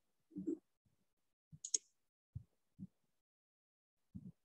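A computer mouse clicking faintly, one sharp press-and-release about a second and a half in, with a few soft low thumps around it.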